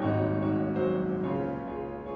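Grand piano playing the slow introduction to a song: sustained chords changing every half second or so over a deep bass note struck at the start, growing a little softer toward the end.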